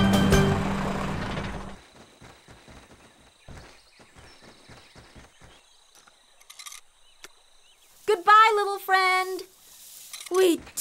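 Cartoon soundtrack: loud music over a low rumble that cuts off suddenly about two seconds in, then a quiet stretch with faint light taps, and a short wavering vocal call near the end.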